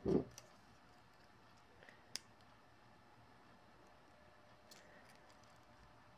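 Chain nose pliers working a small 18-gauge wire jump ring: a few faint metallic clicks, with one sharper click about two seconds in. A short low thump right at the start.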